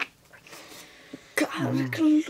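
A short, low vocal moan that slides down in pitch, starting a little past halfway after a quiet stretch.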